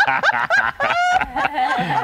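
People laughing, their voices overlapping in short pulsing bursts.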